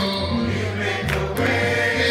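A church congregation singing a gospel song together, with long held notes over a steady low accompaniment.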